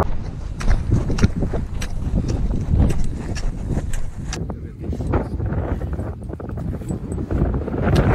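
Wind buffeting a phone microphone, with footsteps crunching on loose volcanic gravel at a steady walking pace, about two steps a second.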